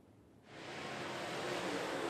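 Dirt-track limited late model race cars heard as one dense, rushing roar of engine noise. It fades in about half a second in and builds steadily.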